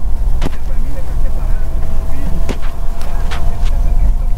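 Car driving on a rain-soaked road: a loud, steady low rumble of road and engine noise, with a few short sharp clicks.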